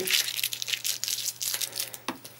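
Thin plastic protective film, freshly peeled off and sticky, being crumpled up in the hands: a dense, irregular crinkling and crackling.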